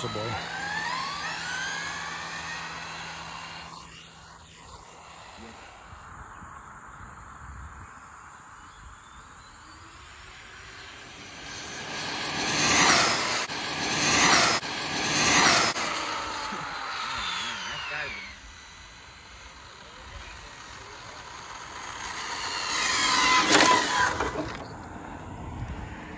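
Arrma Infraction V2 6S RC car's brushless electric motor screaming at full throttle on a speed run, at about 90 mph. The whine rises in pitch as the car launches and fades as it heads away. Near the middle it comes back loud in several surges, dropping in pitch as the car goes by, and swells loud again near the end.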